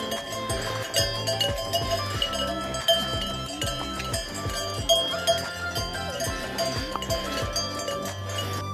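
Cowbells on grazing alpine cows clanging irregularly, with background music underneath.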